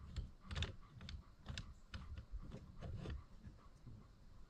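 A string of light, irregular metallic clicks and taps from the double boat-seat mount's collar and hardware being adjusted and tightened on the seat post.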